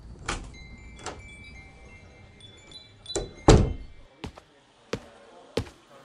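Shop door opening with a small bell jingling on it, then a heavy thunk about three and a half seconds in as the door shuts, followed by a few lighter knocks.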